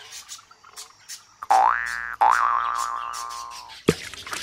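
Two cartoon spring 'boing' sound effects for a hop: the first a short twang rising quickly in pitch, the second wobbling and slowly falling for well over a second. A sharp click just before the end.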